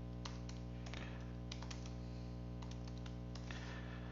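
Computer keyboard typing: scattered, irregular keystrokes, about a dozen over four seconds, over a steady low background hum.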